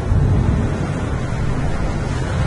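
Instrumental passage of a Suno-generated Spanish song between sung lines: a dense, noisy wash over a heavy low end, with no clear melody, swelling in loudness just after the start.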